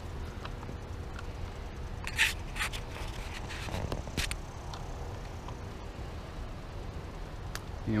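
A few scattered clicks and scrapes of a hand tool turning the bar-end weight bolt on a motorcycle handlebar, over a steady low background rumble.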